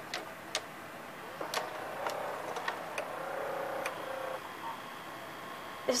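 Samsung VR5656 VHS VCR's tape transport loading a cassette: scattered sharp clicks from the mechanism, with a motor whirring from about two seconds in until about four and a half seconds.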